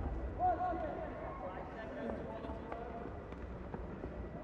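Faint sports-arena ambience from the match broadcast: a steady low rumble with distant voices and a few light taps.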